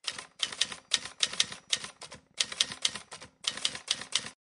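Typewriter sound effect: rapid key clacks in short runs with brief pauses between them, timed to text typing out on screen letter by letter.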